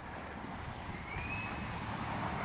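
A low, steady outdoor rumble, with a faint, thin rising whistle-like call about a second in.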